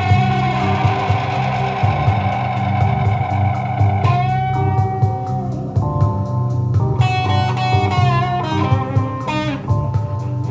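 Live instrumental rock: a lead electric guitar plays long sustained notes, then a busier phrase with bent notes near the end, over bass and drums.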